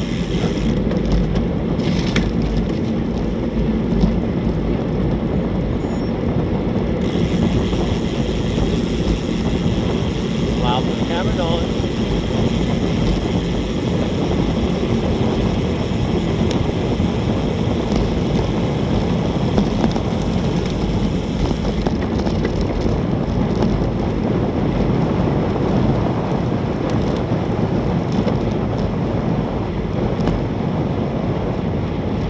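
Wind rushing steadily over the microphone of a camera on a road bike going downhill at about 20 to 30 mph.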